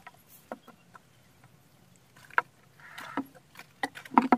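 Scattered light clicks and knocks with a short gritty rustle about three seconds in: hands handling porous volcanic rocks, sand and a plastic adhesive bottle on a stone slab, with the bottle set down near the end.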